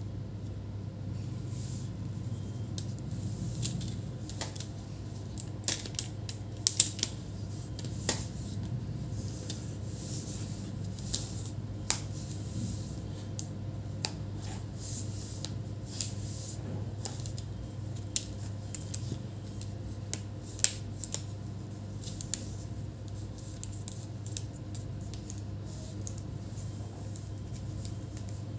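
Scattered sharp clicks and taps of the plastic display assembly and hinge cover of an ASUS ZenBook UX425 laptop being handled and pressed into place, the loudest a few seconds in, over a steady low hum.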